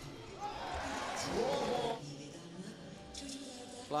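Basketball arena sound: crowd noise and music swell loudly, then drop away about halfway through, leaving quieter court sounds.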